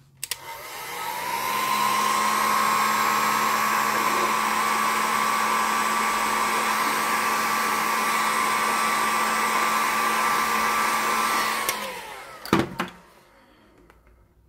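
Handheld heat gun switched on with a click, its fan spinning up to a steady blowing whine as it heats a cut vinyl record. It runs for about eleven seconds, then is switched off and winds down with a falling pitch. A couple of sharp knocks follow.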